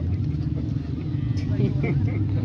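A steady low engine hum with faint voices in the background.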